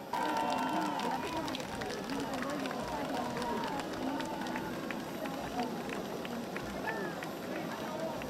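Several excited voices of children and adults calling out over one another, with many short sharp clicks scattered through.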